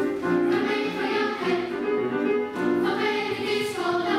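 A children's choir singing together, the sung notes moving on about every half second.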